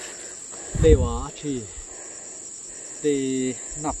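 Steady, high-pitched drone of forest insects, unbroken throughout.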